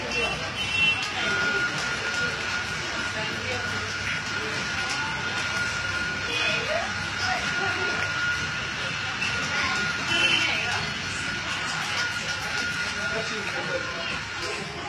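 Busy café background: indistinct voices and clatter, with a steady high-pitched tone that starts about a second in and holds without a break.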